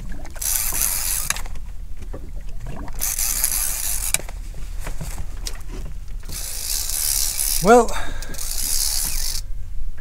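Multiplier fishing reel ratcheting in bursts of about a second, with short pauses between, as a heavy fish is played on a bent boat rod. A brief rising vocal sound comes near the end.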